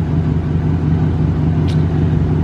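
Dodge Charger Scat Pack's 6.4-litre HEMI V8 idling warm, a steady low engine note.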